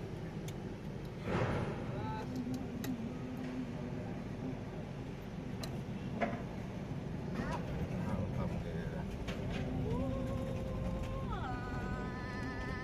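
Vehicle engine and cabin rumble heard from inside the cab as it rolls slowly off the ferry, a steady low noise. Faint voices and a few brief tones come through in the background.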